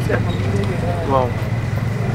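Steady low engine hum under men's voices, one saying "wow" about a second in.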